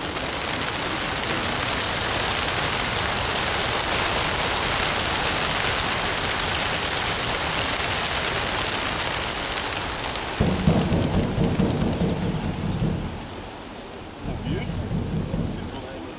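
A large flock of racing pigeons bursts from the transport truck's crates all at once, and hundreds of wings flapping together make a dense, steady rush. After about ten seconds the rush thins, and a lower, uneven noise takes over.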